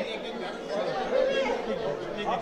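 Chatter of several people talking at once, with no single clear voice standing out.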